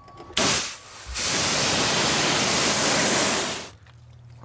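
Pressure washer jet spraying a car wheel: a short burst about half a second in, then a steady hiss of spray for about two and a half seconds that cuts off suddenly near the end as the trigger is released.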